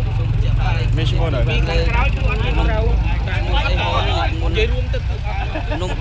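People talking over a steady low rumble of vehicle engines.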